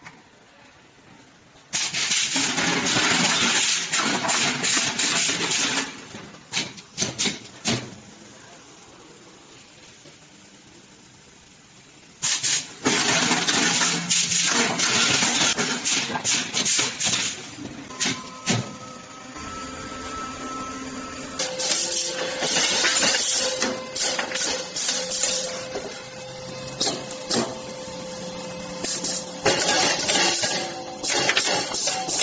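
Lead bush cold-forging machine at work: long spells of loud compressed-air hissing, broken up by sharp metallic clicks and clanks, with a quieter machine hum between them. In the last third steady tones run under the clicking.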